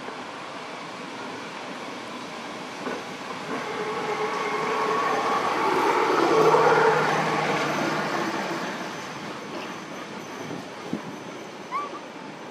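A motor vehicle passing by: its engine and road noise swell over about three seconds, peak midway and fade away. A short rising chirp near the end.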